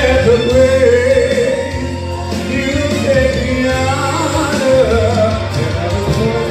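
A man singing a gospel song into a handheld microphone over backing music, his voice carrying a wavering, held melody.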